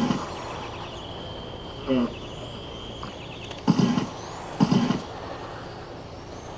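Portable generator running with two rough, uneven surges about two-thirds of the way in, a sound like a motor going bad. A steady high whine runs underneath.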